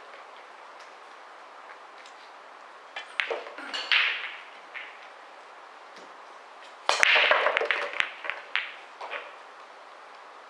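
Nine-ball break: a sharp crack as the cue ball is driven hard into the rack about seven seconds in, then a quick clatter of ball-on-ball and cushion clicks for about two seconds as the balls scatter. A few seconds earlier there is a short cluster of knocks and a brief hiss.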